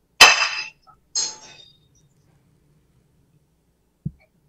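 A ceramic dinner plate set down on the kitchen counter: two sharp clinks about a second apart, each with a short ring, the first the louder.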